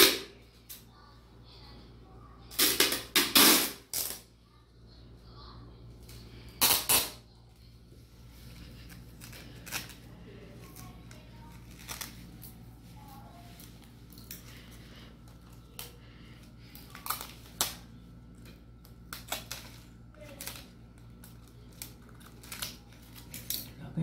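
Clear plastic packing tape being pulled off its roll in two loud rasping strips, about three seconds in and again near seven seconds, followed by lighter crackles and short clicks as the tape and the plastic kite sheeting are handled and pressed onto the bamboo frame.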